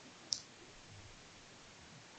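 A single short, high click about a third of a second in: a stylus tip tapping a tablet screen while handwriting. Otherwise quiet room tone.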